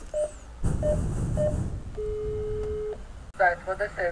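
Building intercom keypad beeping: three short beeps as its buttons are pressed, then a steady tone lasting about a second. A voice is heard near the end.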